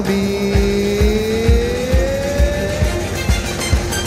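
Live garba band music with no singing: one held melodic note glides slowly upward in pitch over about three seconds, over a steady drum beat of about two beats a second.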